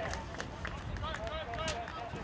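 Baseball field sound: indistinct voices of players and spectators calling out in short shouts, with a few sharp knocks.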